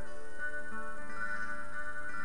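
Acoustic guitar played with a capo, its notes ringing and changing every half second or so, with no voice.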